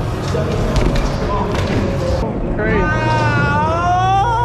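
BMX bike wheels and frame knocking and rolling on wooden skatepark ramps, with several sharp knocks in the first half. After an abrupt change about halfway through, a long, wavering voice takes over.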